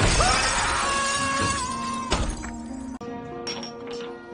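A glass bridge panel shattering: a loud sudden crash with shards ringing and tinkling for about two seconds, then a second, sharper impact just after two seconds in. Music plays underneath.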